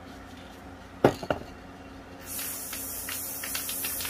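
Aerosol spray paint can spraying a light dusting coat: a steady high hiss lasting about two seconds, starting about halfway through. A sharp click comes about a second in.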